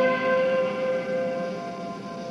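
A guitar's closing chord ringing out and slowly fading at the end of a song.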